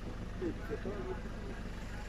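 A faint voice speaking briefly about half a second in, over a steady low background hum.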